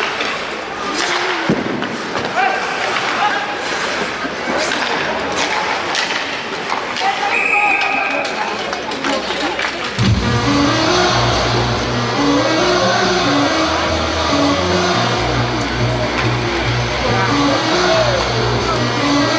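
Ice hockey play in an arena: skates and sticks on the ice, sharp puck and stick clicks, and voices, with a short referee's whistle a little past halfway. About ten seconds in, rock music over the arena's PA system starts suddenly and plays on during the stoppage.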